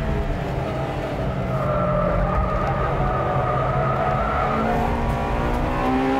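Honda Integra Type R DC2's B18C 1.8-litre VTEC four-cylinder engine running hard, heard from inside the cabin while cornering on track. A steady tyre squeal from the Formula RSV 98 spec track tyres runs for about three seconds in the middle, and the engine note rises near the end.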